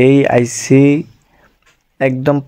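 A man's voice speaking for about the first second, then a pause.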